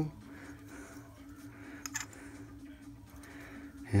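Faint handling of two aluminium moped pistons, with a light click about two seconds in, over a steady low hum.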